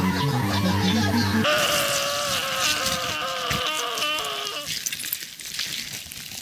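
Music for about the first second and a half, then Ronald McDonald's voice in a long, wavering, quavering 'ran ran ru' call lasting about three seconds, fading to quieter sound near the end.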